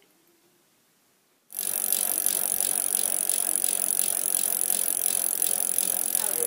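Video-editing sound effect: a steady mechanical rattling whir with rapid clicks, like a reel or tape fast-forwarding. It starts suddenly about a second and a half in, after near silence.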